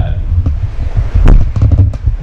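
A pause in a man's speech, filled by a loud low rumble on the recording, with a few short clicks a little over a second in.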